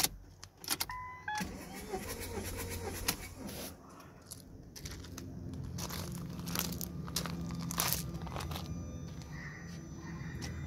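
Ignition keys jangle and click, a couple of short dashboard beeps sound, then the Ford S-Max's 1.8 TDCi four-cylinder diesel is cranked on the starter with a steady drone. The engine turns over without firing while a compression gauge is screwed into cylinder three.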